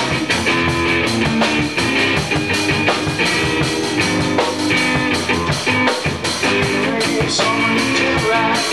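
A rock song played on guitar and drum kit, with a steady beat.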